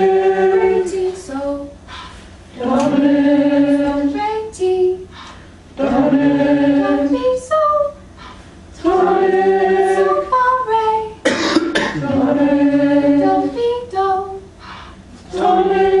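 A group of voices singing short tonal patterns in unison, each a phrase of two or three held notes, one about every three seconds. A cough about eleven and a half seconds in.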